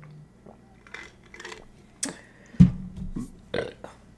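A woman swallowing a drink, then a short, loud burp about two and a half seconds in.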